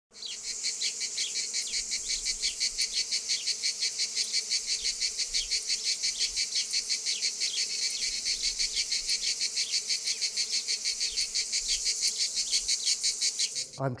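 Crickets chirping in a fast, even rhythm of high-pitched pulses, several a second, which cut off suddenly near the end.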